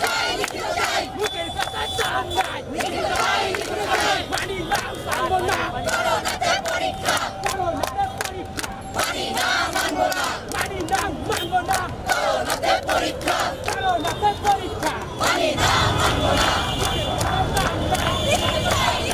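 A crowd of protesters chanting slogans together, many voices shouting in unison.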